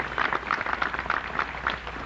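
Large outdoor crowd applauding: many hands clapping in a dense, steady patter.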